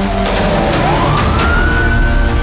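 A siren-like wail that dips, then rises steeply in pitch and holds high, laid over dark intro music with a few sharp hits.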